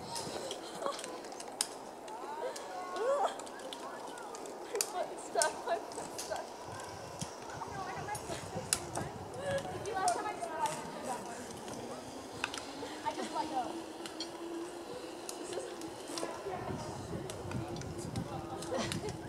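Faint, distant voices of people talking and calling, with scattered sharp clicks and a steady low hum joining about two-thirds of the way in.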